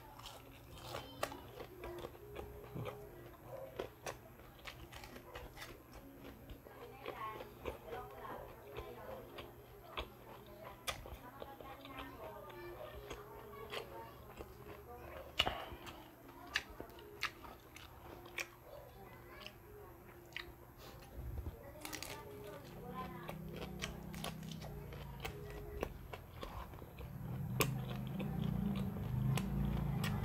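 Close-up chewing and biting of crispy fried okoy (shrimp-and-carrot fritters), with sharp crunches scattered throughout. A low rumble joins in the last several seconds.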